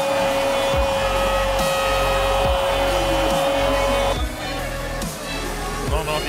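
Football commentator's long held goal shout, one sustained note for about four seconds, then breaking off. It is heard over background music with a steady thumping beat.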